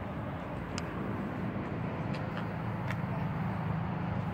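An engine running steadily at idle, a low rumble with a fast, even pulse, with a few faint clicks over it.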